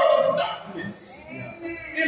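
A man preaching, his speech running on into one drawn-out vocal sound that rises and falls in pitch about a second in.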